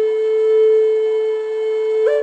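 Intro music: a flute holding one long, steady note.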